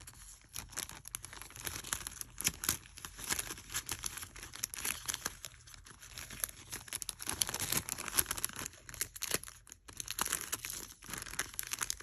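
Clear cellophane bag crinkling and crackling irregularly as hands work a pair of earrings into it and handle the plastic.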